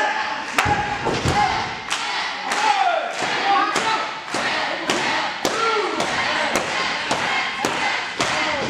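Steady rhythmic slaps on a wrestling ring apron, about one every half second or so, with shouting voices between the blows.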